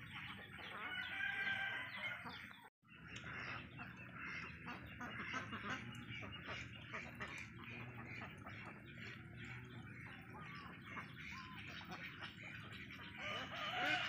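A farmyard flock of chickens and ducks calling: a steady run of short, quick clucks and chatter. The sound cuts out suddenly for a moment about three seconds in.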